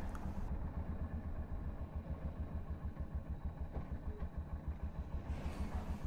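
KTM RC 200's single-cylinder engine running at low speed while riding, a low, even pulsing.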